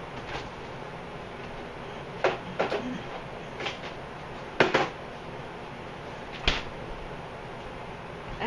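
Sharp knocks and clacks of kitchen things being handled as syrup and butter are fetched: about five, spaced roughly a second apart, the loudest a little past halfway.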